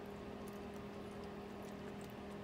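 Steady low hum with a faint click or two over it.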